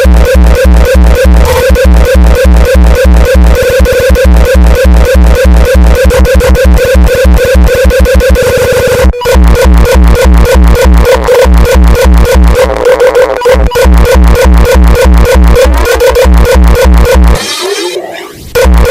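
Uptempo hardcore music: a fast, heavily distorted kick drum under a stuttering distorted synth riff. The beat breaks off for an instant about halfway through, and the kick drops out shortly before the end.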